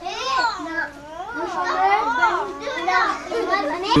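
High-pitched young children's voices, one rising and falling in a sing-song way, starting suddenly.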